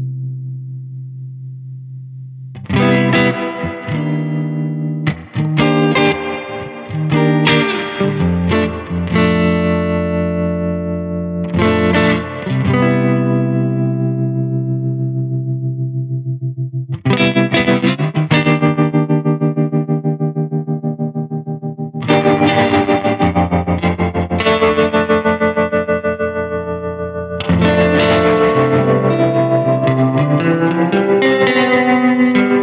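Electric guitar played through a Balthazar Cabaret MKII, a 15-watt tube amp with EL84 power tubes: chords are struck and left to ring. From a little past halfway the amp's bias tremolo is on, and each chord pulses fast and evenly.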